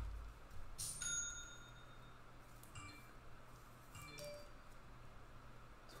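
Hard plastic card holder being closed and handled. It snaps shut with a sharp click about a second in, followed by a brief thin ring, then gives two lighter clinks, one near the middle and one about four seconds in.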